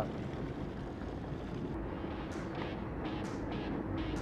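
Sportfishing boat's engine running steadily under wind and water noise, with several brief hissing swishes in the second half.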